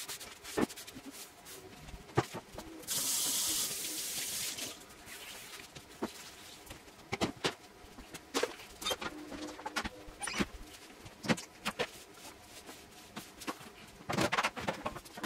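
Kitchen clean-up handling sounds: scattered knocks and clicks of items being picked up and set down on a granite countertop, with a steady hiss lasting about a second and a half, starting about three seconds in.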